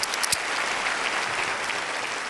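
Studio audience applauding, a steady round of clapping.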